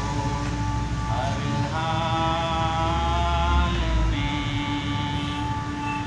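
A man singing a slow Hindi song in long held notes, with a falling glide about a second in.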